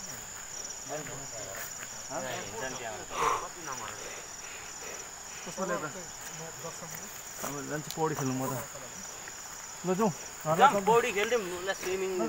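Insects chirring steadily: a continuous high tone with a rapid pulsing trill beneath it. Voices talk on and off over it, loudest near the end.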